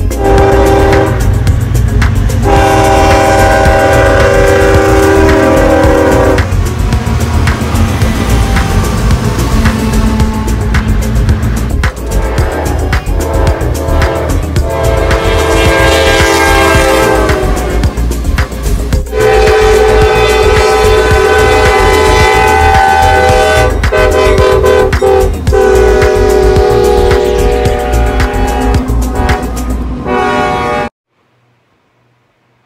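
Freight locomotive horns sounding in a series of long chords over the rumble of passing trains, one horn sliding down in pitch about halfway through as it passes.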